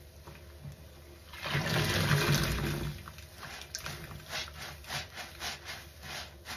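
A soaked foam sponge squeezed by hand in sudsy water: after a quiet start, a loud gush of water pours out of it for about a second and a half, followed by a run of short wet squelches about two a second as it is squeezed again and again.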